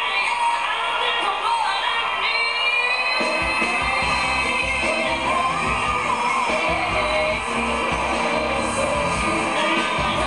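Female pop singer belting high vocal runs live, holding a high note about two seconds in. A full band with drums comes in under her voice about three seconds in.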